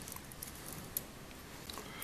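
A few faint clicks and light rattles of fingers handling a small stainless-steel toothbrush drive assembly, one about a second in, over low room noise.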